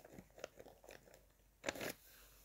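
Metal spoon stirring a thick, gritty ground-hazelnut meringue mixture in a glass bowl: a few faint scrapes and clicks, then a louder scrape near the end.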